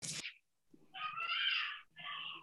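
A short sharp noise, then one drawn-out, wavering high-pitched animal call about a second long.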